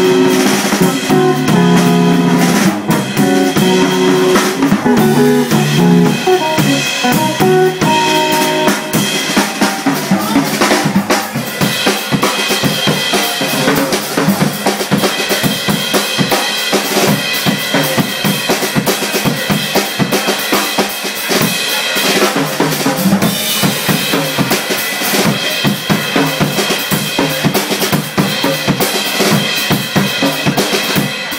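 A jazz drum kit solo: dense, busy drumming and cymbal work from about ten seconds in. In the first several seconds it comes in under the end of a hollow-body electric guitar line.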